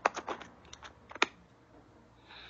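A quick, irregular series of sharp clicks, bunched in the first half-second and again around a second in.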